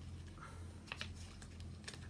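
A few light clicks and taps of a small cardboard picture book being closed and handled, over a faint steady low hum.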